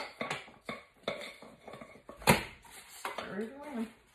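Spoon clanking and scraping against a metal pot as peanut brittle is poured and spread into foil pie pans: a series of sharp clanks, the loudest about two seconds in.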